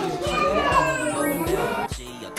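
Toddlers' high voices chattering and squealing over background music with a steady beat.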